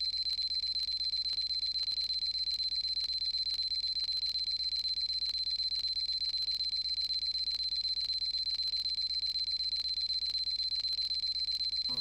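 Electronic loading-screen sound effect: a steady high-pitched tone with fast, even ticking while a progress bar fills.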